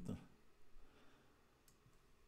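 Faint computer mouse clicks over near silence, with one short, sharper click near the end.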